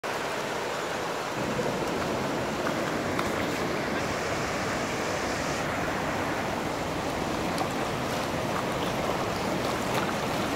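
Muddy floodwater from a flash flood rushing down a desert wash, a steady, turbulent rush of water.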